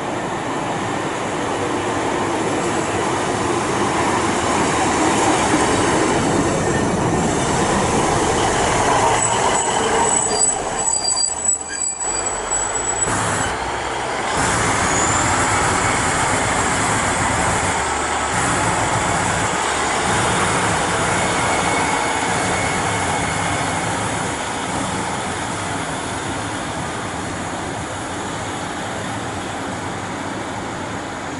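Class 150 Sprinter diesel multiple unit running into the platform, with a high brake squeal about ten seconds in. After a break, the unit's diesel engines and wheels on the rails are heard as it pulls away, slowly fading.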